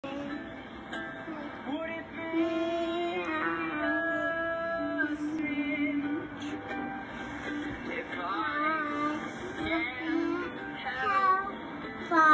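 A young girl singing into a handheld microphone, holding long notes with some sliding in pitch.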